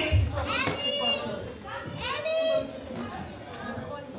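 Several people's voices talking and calling out in a large hall, some of them high-pitched.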